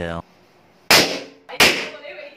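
Two rubber balloons bursting, less than a second apart: each a sharp, loud bang that dies away quickly.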